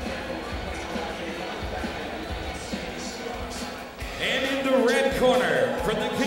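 Background music and hall noise, with scattered low thumps. About four seconds in, a ring announcer's voice over the arena PA begins, drawn out and echoing, as he starts introducing the next fighter.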